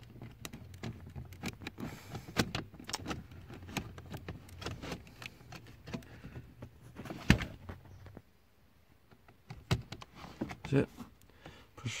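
Hands fumbling with the seat's airbag wiring plug and loom under a car seat: a run of small plastic clicks, taps and rustles, with one sharper click about seven seconds in and a short pause near the end.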